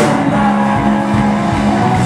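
Live rock band with a distorted electric guitar chord held and ringing after a cymbal crash at the start. The chord is steady and sustained, with the drums beneath it.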